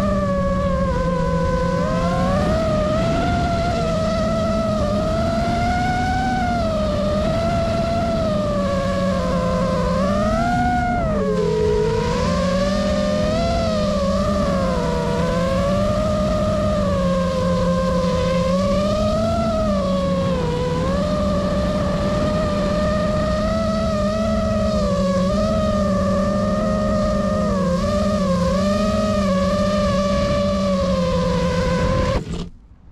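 FPV quadcopter's brushless motors and propellers whining, several tones rising and falling together as the throttle changes, with a brief dip in pitch about eleven seconds in, over a steady rush of air.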